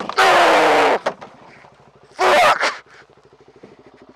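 Suzuki DR-Z400SM single-cylinder engine idling with a rapid, even pulse. Over it come two loud yells, one near the start lasting most of a second and a shorter one about two seconds in.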